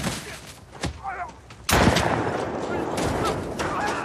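A couple of sharp knocks, then a sudden loud burst of noise a little under halfway through that carries on, rough and sustained, almost to the end.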